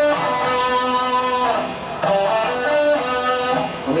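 Stratocaster-style electric guitar playing single notes. A note rings for about a second and a half, then about two seconds in a short run of picked notes follows: a beginner phrase of three stepwise notes and a leap of a third.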